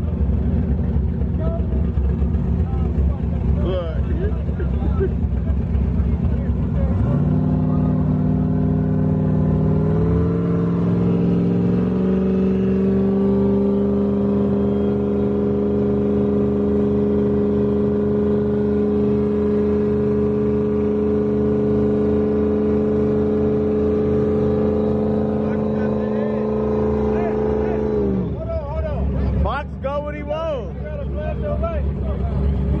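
A car engine running with a low, uneven rumble, then revved up about seven seconds in, stepping higher twice and held at a steady high pitch for about fifteen seconds before dropping back near the end.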